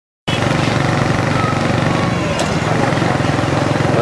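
Small motorcycle engines running steadily at low speed, a fast even pulse of firing strokes that starts abruptly just after the opening.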